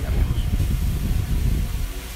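A low, uneven rumble that rises and falls, louder than the talk around it.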